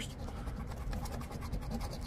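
A coin scratching the latex coating off a paper lottery scratch-off ticket in rapid back-and-forth strokes.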